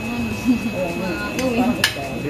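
Voices talking at a table, with one sharp clink of a fork on a plate near the end and a steady high whine underneath.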